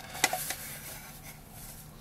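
A sharp light click about a quarter second in, then a fainter one, as a plastic toy rifle is turned over in gloved hands. Only a faint background hiss follows.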